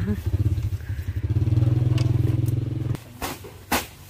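An engine running in a low, steady drone that stops suddenly about three seconds in, followed by a few sharp knocks.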